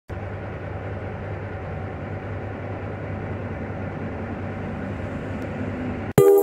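A steady, low engine hum with a deep drone, like a vehicle's engine idling close by.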